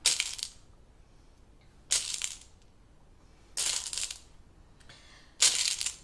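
Gold sugar pearls and rods rattling as fingers rummage through a tub of them, in four short bursts about every one and a half to two seconds.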